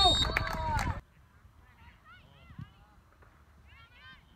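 A loud first second of wind on the microphone and calling voices, cut off abruptly. Then, faintly, short honking calls: a few in the middle and a quick run of about five near the end.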